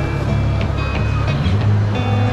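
Background music with a steady deep bass and held notes.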